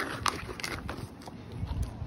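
A McIntosh apple being bitten and chewed quickly, giving several short, crisp crunches.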